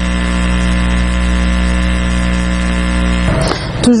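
A loud, steady electrical hum or buzz with many evenly spaced overtones, of the kind mains hum makes in an audio feed. It cuts off suddenly about three seconds in.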